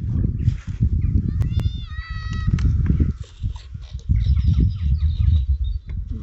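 Wind buffeting the microphone in gusts, with a short animal call lasting about a second, about one and a half seconds in.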